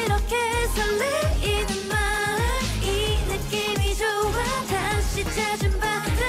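A woman singing a K-pop song live over a pop backing track, her voice gliding between held notes above a steady beat whose deep bass notes slide downward again and again.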